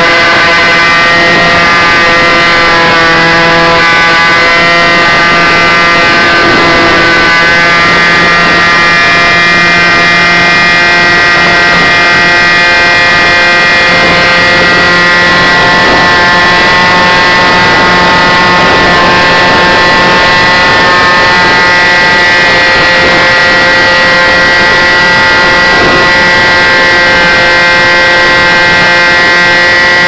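Model aircraft's motor and propeller, heard from a camera mounted on the plane in flight: a loud, steady buzzing drone whose pitch shifts slightly about seven seconds in.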